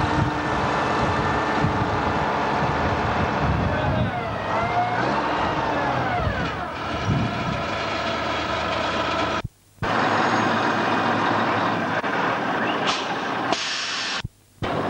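Hough Pay Loader wheel loader engine running steadily, its note rising and falling once about halfway through as it works. The sound drops out for a moment about two-thirds of the way in, with voices underneath.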